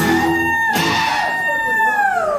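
A singer holds one long, high wailing note that starts to slide down at the end, over a strummed acoustic guitar chord that is cut off about half a second in.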